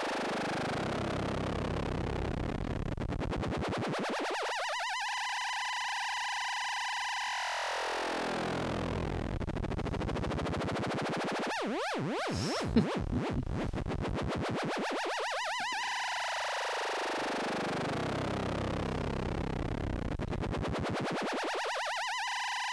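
Make Noise Maths modular synthesizer patch run as an audio-rate oscillator through a wave-folder, making buzzy, overtone-rich 'piou-piou' tones. The pitch swoops slowly down and back up about every ten seconds, with a few clicks near the middle.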